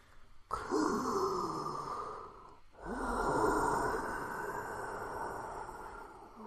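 A person's voice making two long, breathy groans: one starts about half a second in, the other about three seconds in, and both fall in pitch.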